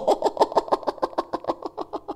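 A man laughing into a close microphone: a quick run of breathy "ha-ha" pulses, about seven or eight a second, that fades out.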